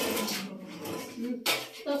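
Sheet-metal stovepipe sections scraping and clattering as they are worked together into place, with a sharper metallic knock about a second and a half in.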